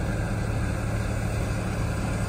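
Heavy machinery engine running steadily: an even, low drone with a constant hum and no change in pitch.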